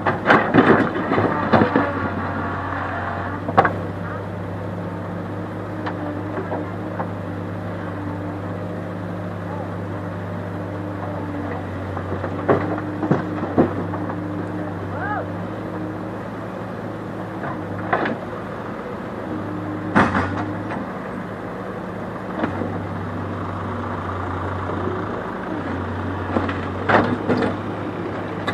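Backhoe loader's diesel engine running steadily, with clatters and knocks of rock as the bucket digs and dumps stone into a tractor trolley: a burst in the first two seconds, then more from about twelve to twenty seconds in.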